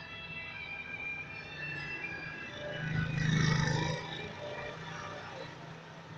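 A motor vehicle passes close by, rising to its loudest about three and a half seconds in and then fading. Faint music with held notes plays under it throughout.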